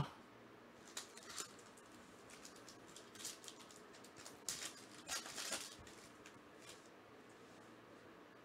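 Faint crinkling and rustling of a foil trading-card pack wrapper being torn open and the cards slid out, in short scattered bursts that are busiest about halfway through.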